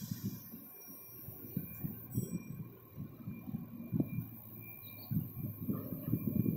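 Irregular low thumps and rumble of wind buffeting the microphone, several a second, with a faint steady high-pitched tone behind them.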